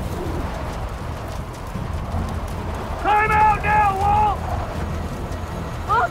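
A steady low rumbling noise runs throughout. About three seconds in, a person gives a drawn-out, high-pitched wordless cry in three held pieces.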